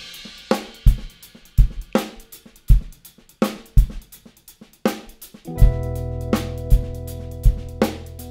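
Drum kit playing a groove alone, with kick, snare, hi-hat and cymbal hits. About five and a half seconds in, sustained keyboard chords and a deep held bass note come in under the drums as the song's intro begins.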